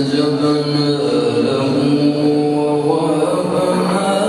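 A qari's solo melodic recitation: one man's chanting voice holds a long steady note for about three seconds, then the melody moves on to other notes.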